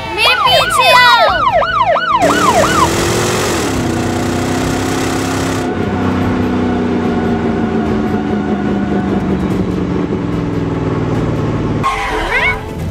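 Electronic toy siren from a PAW Patrol Chase police cruiser toy, a quick up-and-down wail about three times a second for the first couple of seconds. It is followed by a steady electronic hum with a hiss that slowly drops in pitch.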